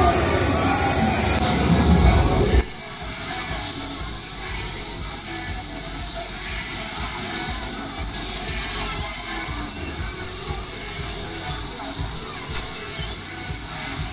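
High-pitched metallic squeal from a turning children's fairground ride with plane cars on rotating arms, coming and going in stretches of one to two seconds. A loud low rumble fills the first couple of seconds and cuts off suddenly.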